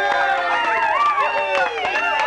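Crowd cheering, whooping and whistling, with scattered clapping.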